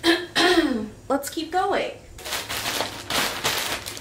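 A woman's wordless voice: a few short vocal sounds that slide in pitch over the first two seconds, then a breathy hiss lasting about a second and a half.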